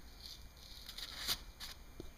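Faint handling noise: a few soft clicks and rustles of parts being moved about on paper, the strongest a little past a second in.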